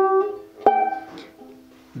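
Banjolele strings plucked and ringing, a second pluck just under a second in, each note fading away, as the note at the 12th fret is compared with the open string to check that it sounds one octave higher: the test that the floating bridge sits in the right place.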